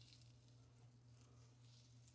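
Near silence: faint squishing of fingers working cleansing conditioner through wet hair and rubbing the scalp, over a steady low hum.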